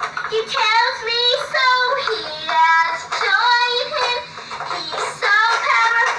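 A young girl singing a song about Jesus, in drawn-out, wavering notes broken into short phrases.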